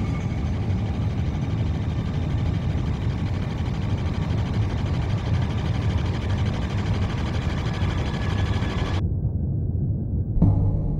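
A steady, loud low rumbling drone that starts abruptly, turning muffled about nine seconds in as its upper part is cut away.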